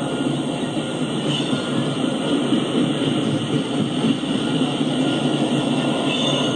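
Freight train of loaded tank cars rolling past: a steady noise of steel wheels running on the rails.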